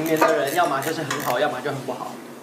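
Men talking over a meal, with a few light clinks of dishes and utensils at the table.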